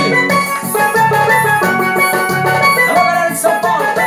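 Electronic keyboard playing a piseiro (pisadinha) instrumental line with steady drum and bass accompaniment.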